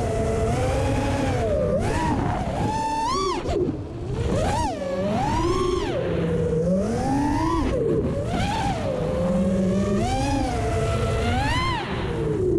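FPV quadcopter's Racerstar 2207 2500kv brushless motors and propellers whining in flight. The pitch swings up and down with each throttle punch, about every second or two, over wind and prop-wash rumble on the onboard camera's microphone.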